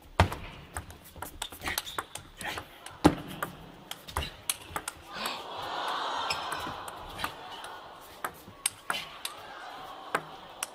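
Table tennis rally: the ball clicks sharply off the rackets and the table again and again at an uneven, quick pace. The crowd's noise swells about five seconds in and then settles.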